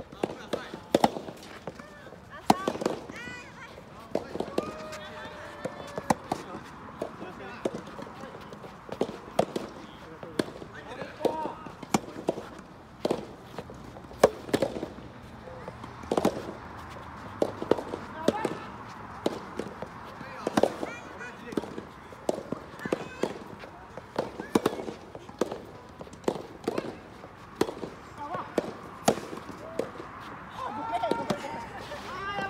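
Rackets hitting rubber soft-tennis balls in rallies: a run of sharp pops, irregular and sometimes overlapping, coming from players on several courts at once.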